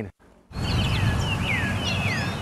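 Birds chirping with short, gliding whistles over a steady rush of outdoor background noise, starting about half a second in.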